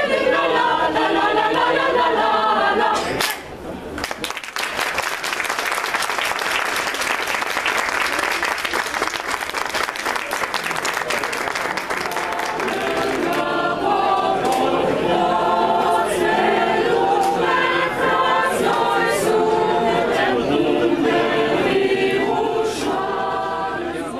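Mixed adult choir singing a cappella, breaking off about three seconds in. Applause follows for about nine seconds, then choral singing starts again.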